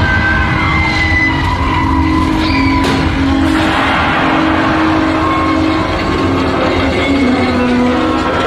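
Staged earthquake effects inside a theme-park dark ride: a loud, continuous low rumble with long screeching, squealing tones over it and a sharp crack about three seconds in.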